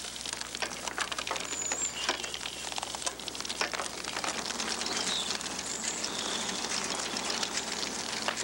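Rattling and clicking of an early treadle-driven safety bicycle being ridden, over a steady crackling noise, with a few high bird chirps, one about two seconds in and more around the middle.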